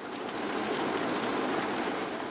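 Gravel pouring from tipped lift buckets onto the pile in the lower hopper, a steady rushing hiss like rain that swells in over the first half second. This is the buckets being unloaded at the bottom of the gravel energy-storage lift.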